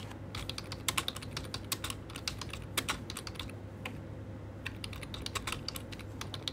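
Typing on a computer keyboard: irregular runs of key clicks, with a pause of about a second midway.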